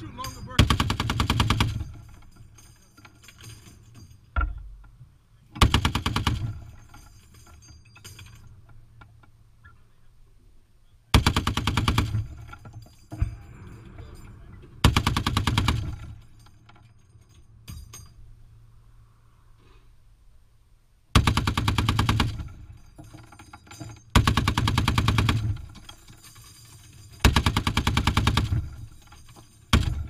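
Browning M2 .50 caliber heavy machine gun firing repeated short bursts, each one to two seconds long, with gaps of a few seconds between them.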